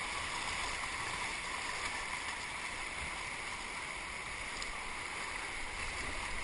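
Steady rushing of flood-swollen river rapids around a kayak.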